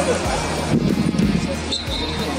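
Background music: a song with a steady, heavy beat and sung vocals.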